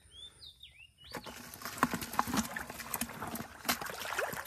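Splashing and slapping in shallow muddy water, with many sharp wet smacks, starting about a second in after a few high chirps.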